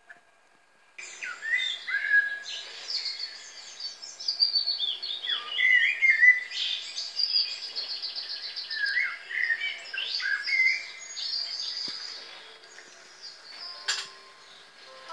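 Eurasian blackbird calling: a busy run of chirps, downward-sliding notes and quick trills, starting suddenly about a second in.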